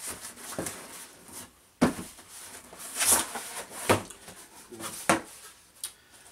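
Cardboard box being opened by hand: a few sharp rips and scrapes of cardboard and tape as the flaps are pulled apart.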